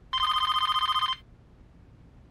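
Corded landline telephone ringing once: a single electronic ring about a second long, a rapid trill of two high tones.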